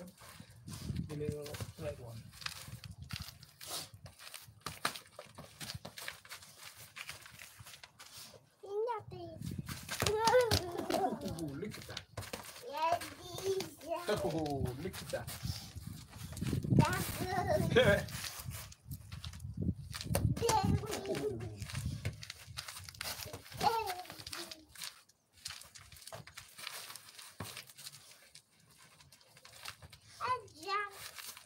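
A toddler's high-pitched, wordless babbling in several short runs through the middle, rising and falling in pitch, with scattered light knocks.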